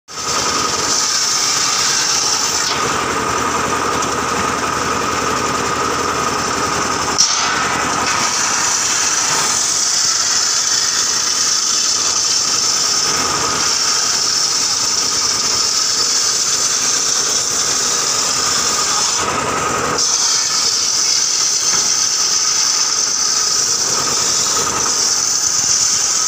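Large bench-mounted circular saw ripping a timber slab lengthwise into planks: a loud, steady high-pitched whine of the blade cutting through the wood. The cutting whine eases for a moment twice, once near the start and again about three quarters of the way through, and a single sharp click comes about seven seconds in.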